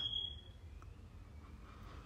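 Faint room tone: a quiet steady hiss and hum in a pause between words, with the end of the last spoken word dying away at the very start.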